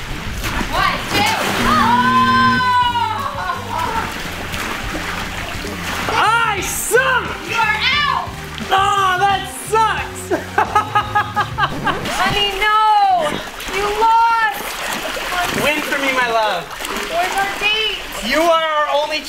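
Excited shouting and laughing voices with a water splash as a man tumbles off an inflatable pool float into the water, over background music with a steady bass line.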